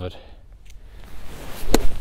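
Eight iron striking a golf ball off frozen, rock-hard turf: a single sharp crack about three-quarters of the way through, like hitting off concrete.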